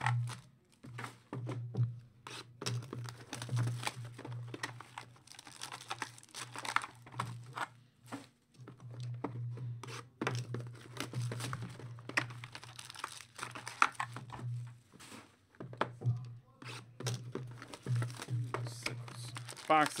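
Trading-card boxes being torn open and foil-wrapped card packs handled, in irregular bursts of tearing, crinkling and crackling, over a steady low hum.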